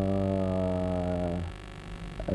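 A man's drawn-out hesitation sound, a voiced filler held at one steady pitch for about a second and a half, then cut off.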